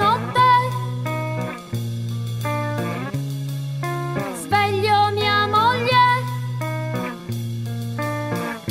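Punk rock band music: electric guitar playing held low notes, with bending, gliding notes above them.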